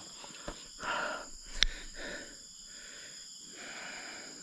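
A person breathing close to the microphone, a few soft breaths, with faint rustling and one sharp click about one and a half seconds in.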